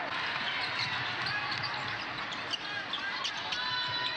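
A basketball being dribbled on a hardwood court over the steady noise of an arena crowd, with scattered short, high sneaker squeaks.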